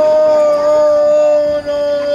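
A group of young voices holding one long, steady sung note together, a drawn-out festival call from a huddled team, with a brief dip near the end.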